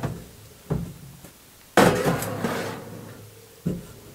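A metal baking tray being slid onto the rack of a Rawmid steam oven. A few light knocks, then a loud clattering scrape of metal on the oven rails about two seconds in that trails off over a second or so, and another knock near the end.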